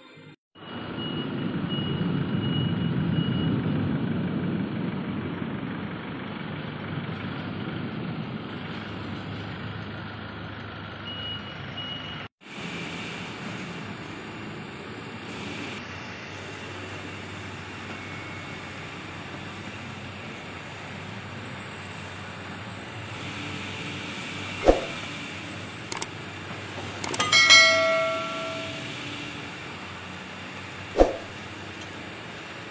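Heavy industrial machinery running with a steady low rumble, cut off abruptly about twelve seconds in. After that, a running conveyor belt gives a steady rushing rumble, with a few sharp knocks and a ringing metallic clank a couple of seconds before the end.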